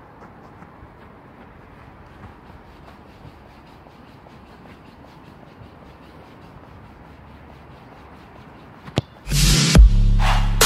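Faint steady background noise, then a single sharp impact of a football being struck about nine seconds in, followed at once by loud electronic music with heavy bass.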